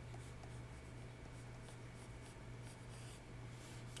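Faint scratching of a stylus drawing strokes across a tablet's surface, over a steady low hum.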